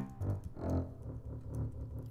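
Logic Pro X's Cinema Strings software instrument played from the computer keyboard: about three short, low string notes.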